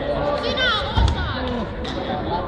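Raised voices in a large sports hall, with a single dull thump about a second in.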